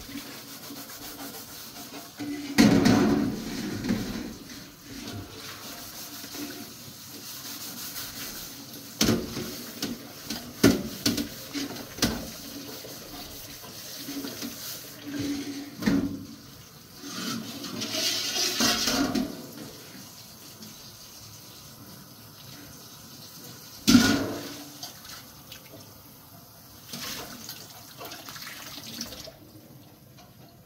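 Kitchen tap running into a stainless steel sink while a large metal tray is rinsed under it, with water splashing off the tray. Now and then there are sharp clanks of metal against the sink.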